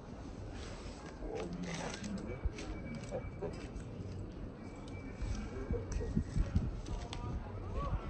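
Indistinct voices in the background over low, steady outdoor noise, with nothing standing out.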